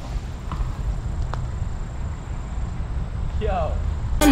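Low rumbling noise with two faint clicks, and a brief voice near the end.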